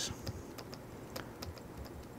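Faint, irregular light clicks and taps of a stylus on a pen tablet as a note is handwritten, over quiet room tone.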